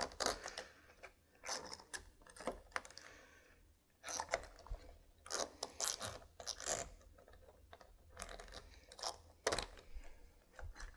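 Mounting screw being fished through a deadbolt's interior plate, scraping and clicking against the metal as it hunts for the threaded hole on the far side: faint, irregular clicks and scrapes with a short pause partway through.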